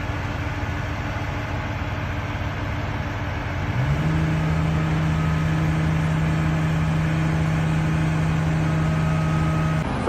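Heavy diesel engines of a concrete pump truck and mixer truck running steadily. About four seconds in, the sound shifts to a louder, steady, higher engine tone that holds to the end.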